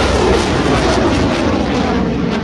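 Missile launch: the rocket motor makes a loud, steady rushing noise with a deep rumble underneath.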